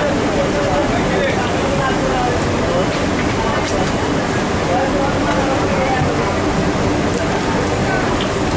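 Steady loud noise of a garment factory floor, machinery and air running continuously, with indistinct voices talking in the background.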